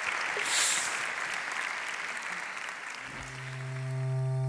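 A large audience applauding, the clapping fading out over about three seconds. Near the end a low, sustained electronic music chord begins.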